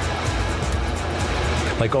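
Steady jet noise from a Dassault Mystère IV's Verdon turbojet as the fighter flies overhead, mixed with background music.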